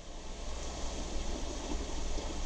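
Hunt school pointed dip pen nib scratching lightly across sketchbook paper as an ink line is drawn, over a low steady hum.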